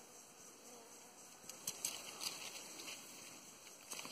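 Faint buzzing of Melipona bicolor (guaraipo) stingless bees flying at their nest entrance, with a few soft clicks about halfway through.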